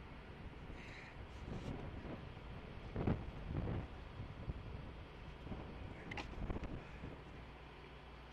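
Wind rumbling on an outdoor camera's microphone, with two dull thumps about three seconds in and a few fainter knocks about six seconds in.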